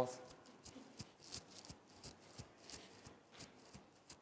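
Footfalls of a group of children jogging on the spot on a tiled floor: a quick, irregular patter of soft thuds, several a second.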